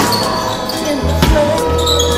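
A basketball bouncing on a wooden hall floor under a steady background music track with held bass notes.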